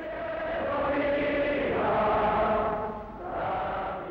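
A large crowd chanting in unison, a long held call that swells to a peak about two seconds in, falls away, then rises again briefly near the end.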